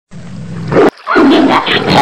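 Tigers roaring and snarling in two loud bursts: the first cuts off suddenly a little under a second in, and the second starts about a quarter second later.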